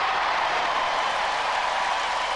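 Studio audience cheering and applauding, a steady wash of crowd noise with no break.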